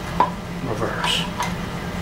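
A few sharp metallic clicks and clunks from an outboard lower unit being worked by hand as the shift rod is moved and the gearcase tried in neutral, over a steady low hum.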